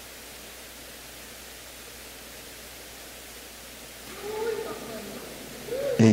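Steady hiss of an open microphone and sound system, then from about four seconds in a man's voice breaking in with short calls that rise and fall, like a microphone check of "ei, ei".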